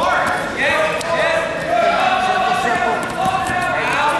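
Shouting from the sidelines of a wrestling bout, echoing in a gymnasium: several drawn-out yelled calls follow one another.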